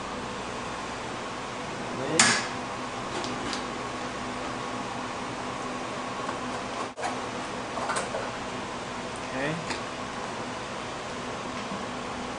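An Eppendorf microcentrifuge lid is unlatched and opened with one sharp click about two seconds in. A few light clicks follow as tubes are set into the rotor, all over a steady room hum.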